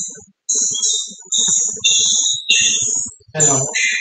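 A voice coming through video-call audio, heavily distorted and garbled into choppy half-second bursts with a shrill, high-pitched edge; no words come through clearly.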